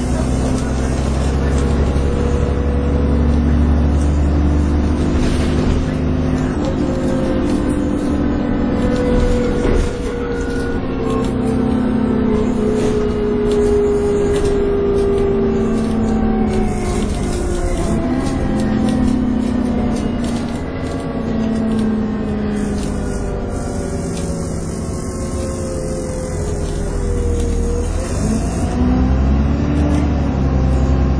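Inside a Dennis Trident 2 double-decker bus under way: the diesel engine runs with a whine that rises and falls in pitch as the bus speeds up and slows. The pitch drops and climbs again twice, about halfway through and near the end.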